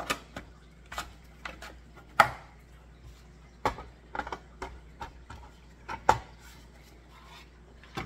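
Plastic clicks and knocks from the parts of a LetPot Air hydroponic garden being handled as its light pole is fitted into the base and the light panel is attached. The knocks come singly and irregularly, the sharpest about two seconds in, with others near four and six seconds.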